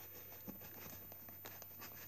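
Faint scratching and rubbing on a cardboard toy box as its sellotape is worked at with a knife, with a small click about half a second in.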